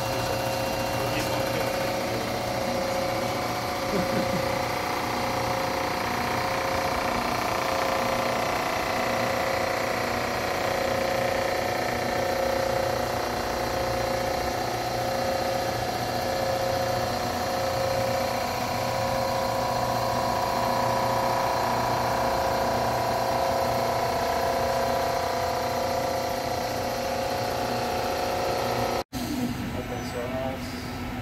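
Rottler surfacing machine milling a warped aluminium cylinder head flat with a polycrystalline diamond (PCD) cutter, a steady machining whine with several held tones.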